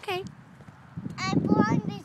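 A young child's high-pitched voice: a short sound right at the start, then sing-song vocalizing from about a second in, over a burst of low rattling and knocking.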